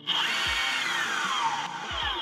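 A urethane skateboard wheel spinning fast, a mechanical whir that starts suddenly, with a high steady whine and a lower tone that falls in pitch as it goes.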